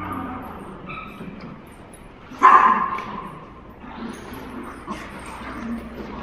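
Dogs at play, with one loud bark about two and a half seconds in among softer dog sounds.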